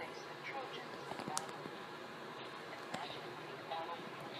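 Indistinct background chatter over steady room noise, with a sharp click about a second and a half in and a fainter one near the end.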